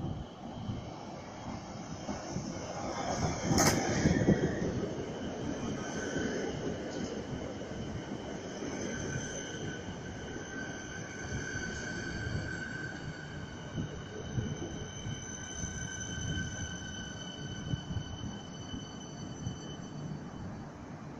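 Siemens electric multiple unit train arriving and slowing along the platform: a rumble that is loudest as the front passes about four seconds in, with a sharp crack there, then a steady high-pitched squeal from about nine seconds in as it rolls to a stop.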